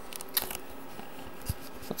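Power Mac G5 running while it boots, giving a steady fan hiss, with three faint clicks.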